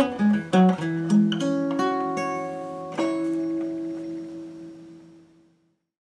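1933 Gibson L-4 round-hole archtop acoustic guitar played fingerstyle: a short run of plucked notes, then a final chord about three seconds in that rings on and fades away.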